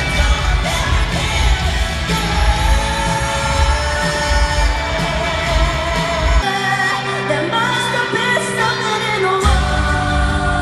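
Live pop-country concert music with singing over a heavy bass and drum band. The bass and drums drop out for about three seconds past the middle, leaving the voice and higher instruments, then come back in.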